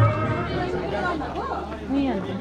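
Overlapping chatter of several people, with quieter background music underneath that fades out near the end.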